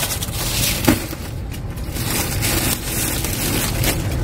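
Groceries being shifted around on a pickup's back seat: plastic wrap on packs of bottled water crinkling and rustling, with one sharp knock about a second in, over a steady low hum.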